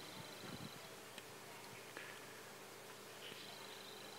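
Quiet outdoor background: a faint, steady low buzz with a thin high tone early and again near the end, and a few soft clicks.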